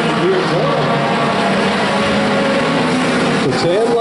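Race car engines of a field of stock cars running at speed around a short oval, a loud, dense, steady sound with several engine notes layered together.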